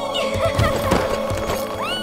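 Film-score music with horse sound effects: hoof thuds, then a horse whinnying near the end as it rears.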